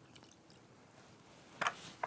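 A lemon half being squeezed by a gloved hand for its juice: mostly faint, with one short wet squish about one and a half seconds in.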